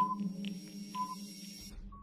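Countdown timer sound effect: a short electronic beep about once a second with fainter ticks between, over a steady low drone, gradually fading. A brief, slightly higher tone starts near the end.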